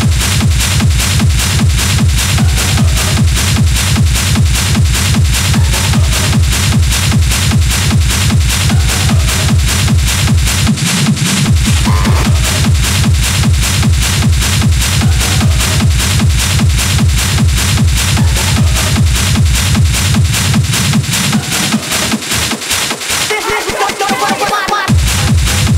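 Hard techno in a continuous DJ mix: a fast, steady kick-drum beat at about two and a half beats a second, with heavy bass under dense, noisy upper layers. The bass drops out briefly about eleven seconds in and thins again near the end.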